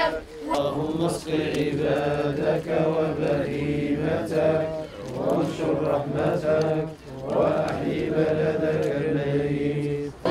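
A crowd of voices chanting a religious supplication in unison, in long drawn-out phrases with short breaks between them.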